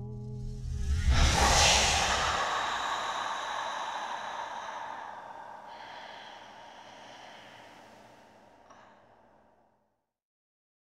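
A sudden loud rush of noise with a deep rumble swells about a second in, then fades slowly over several seconds into a thin hiss that dies away near the end. Music stops just before it.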